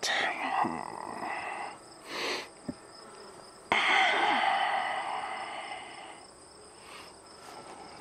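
Honeybees buzzing on a brood frame lifted out of a nuc. The buzzing jumps suddenly louder about halfway through as the bee-covered frame comes close, then fades.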